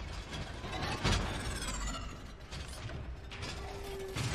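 Mechanical clicking and clanking, like a ratcheting machine working, over a low rumble, with a louder knock about a second in and a brief steady whine near the end.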